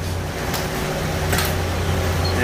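Concrete pump truck running with a steady low engine drone, and two short rushing noises about half a second and a second and a half in.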